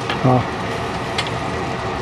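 Tofu and roast pork in a thickened sauce simmering in a wok over a gas flame: a steady hiss, with a single light tap of the spatula on the wok about a second in.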